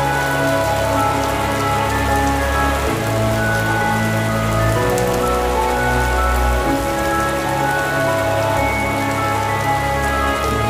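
Steady rain falling, laid over slow classical-style music with long held notes and deep bass notes that change every couple of seconds.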